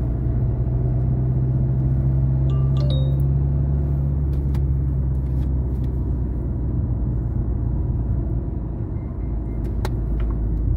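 Steady low rumble of a car on the move, heard from inside the cabin: engine hum and tyre noise, with a few faint clicks. The rumble eases a little shortly before the end.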